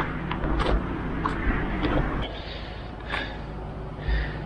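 Footsteps on a steep dirt and gravel road, irregular steps over a steady low rumble on the microphone.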